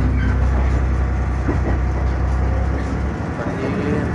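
Diesel railcar running along the track, heard from inside the passenger car: a steady rumble with a deep drone that falls away about three seconds in.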